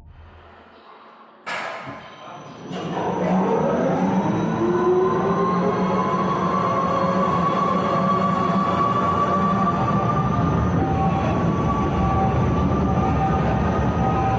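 Faint tail of intro music, then a sudden cut to a roller coaster train rolling through a tunnel: a steady rumble with a whine that slowly rises in pitch.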